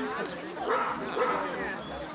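A large shepherd dog barking a few short barks, with voices talking in the background.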